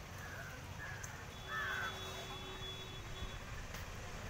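Outdoor ambience: a few short bird calls, the loudest about a second and a half in, over a low steady rumble, with a faint steady tone from about one to three seconds in.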